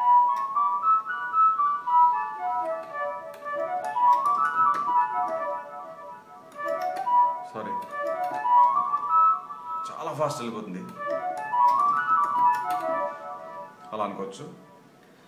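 Fast stepwise note runs on a keyboard's flute-like patch in the pentatonic Mohanam scale, rising and falling and repeated about four times, with a short break around ten seconds in.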